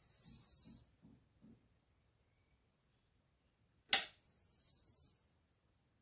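A battery spot welder tacking a nickel tab onto a cell: one sharp snap about four seconds in. A brief high-pitched hiss comes near the start and again just after the snap.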